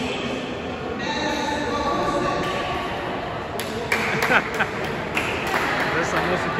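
Indistinct voices of people around an indoor swimming pool, with several sharp knocks starting about three and a half seconds in.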